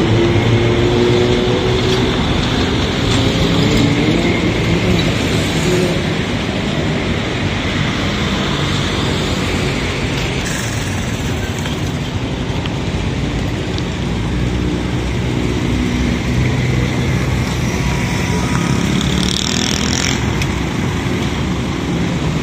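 Street traffic passing close by: engines of a minibus, auto-rickshaws and motorcycles over a steady road rumble. A louder engine hum passes in the first few seconds and another around two-thirds of the way through.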